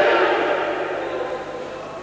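The tail of a loud karate shout, a kiai or shouted count, ringing out in the echo of a large sports hall and fading steadily away.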